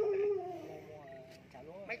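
Dog whining: one long whine that drifts slowly down in pitch and fades away over about a second and a half.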